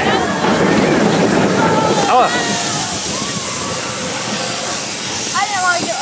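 Mine-train roller coaster running along its track, heard from a car as a loud, steady rushing rumble, with a higher hiss coming in about halfway through.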